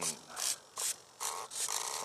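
Electric motors of a Freewing B-17 radio-control model blipped in about four short bursts of hissy whine as the plane is taxied on the runway.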